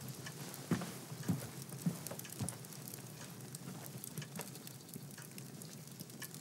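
Soft footsteps walking away, four steps a little over half a second apart, over faint scattered small clicks of room tone.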